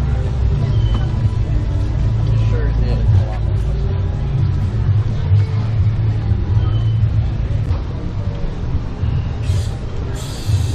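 Steady low rumble on a walking camera's microphone, with the indistinct voices of people around it.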